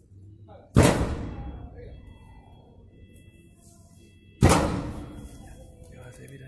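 Two gunshots about three and a half seconds apart, each loud and sharp and trailing off in a long echo.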